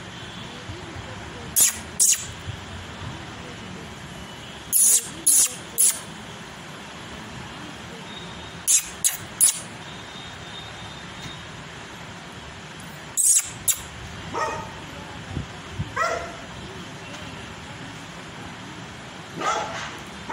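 Black Labrador barking in short groups of two or three sharp barks, a few seconds apart.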